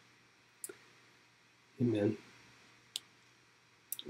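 Two short, sharp clicks, the first about half a second in and the second about three seconds in, around a single man's spoken "Amen" near the middle; between them there is near silence.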